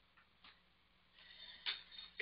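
Near silence with a few faint clicks. The last and loudest comes near the end, just before speech resumes.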